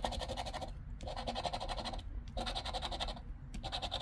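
A round metal scratcher coin scraping the latex coating off a scratch-off lottery ticket in quick back-and-forth strokes. The scratching comes in four short spells with brief pauses between them, as the coating over each prize amount is rubbed away.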